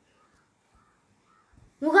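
Near silence, then near the end a child's high, drawn-out voice begins speaking in Tamil.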